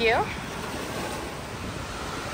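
Small waves washing up on a sandy beach: a steady surf hiss, with some wind on the microphone.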